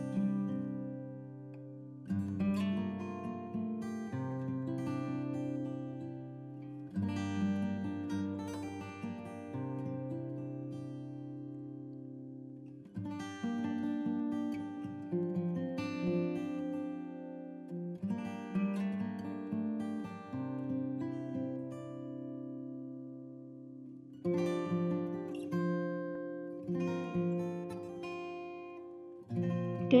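Background music: acoustic guitar playing a slow chord progression, with a new chord struck every two to three seconds.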